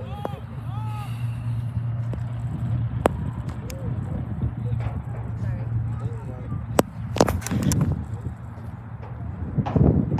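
Outdoor soccer-match sound: distant shouts and calls from players and sideline spectators over a steady low rumble, with a few sharp knocks and louder bursts of noise later on.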